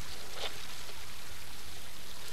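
Steady, even rushing of a river flowing, with a faint tick about half a second in.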